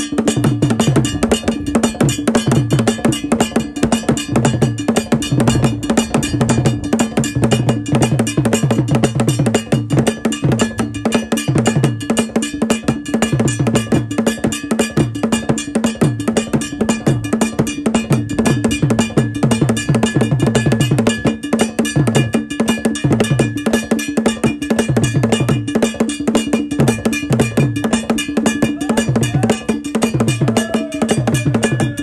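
Traditional Ghanaian drum music, loud and continuous: a bell keeps a steady repeating pattern over a rhythm of low drum strokes.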